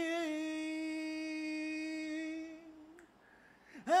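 A man singing a cappella, holding one long steady note for about two and a half seconds that wavers slightly as it ends; after a short pause he slides up into the next phrase near the end.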